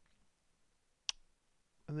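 A single sharp click of a computer mouse button about a second in, against quiet room tone.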